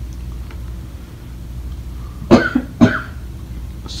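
A person coughs twice, about half a second apart, a little past halfway through, over a steady low hum.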